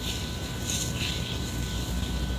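Steady low hum and hiss of room background noise.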